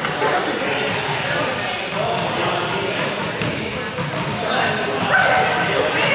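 Many young people chattering at once in an echoing sports hall, with scattered thuds of balls dropping onto the floor.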